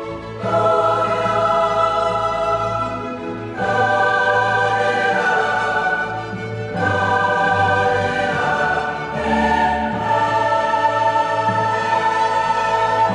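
Title music: a choir holding long, slow chords that change about every three seconds.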